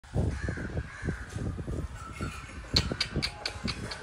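A bird calling in a quick run of about six short, sharp, high notes in the second half, over low thumps and rumble on the microphone.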